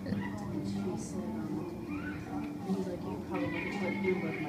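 Indistinct voices in a dance studio: adult chatter mixed with young children's high-pitched voices.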